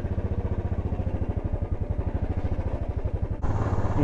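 Royal Enfield Bullet's single-cylinder engine running at low revs with an even, rapid thudding beat. About three and a half seconds in, the sound changes abruptly to a steadier run.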